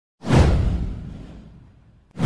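A whoosh sound effect with a deep bass swell. It comes in sharply about a quarter second in, sweeps downward in pitch and fades away over about a second and a half.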